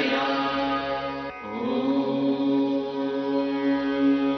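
Devotional music built on a steady drone of held tones in the manner of a mantra chant, with a brief dip about a second and a half in.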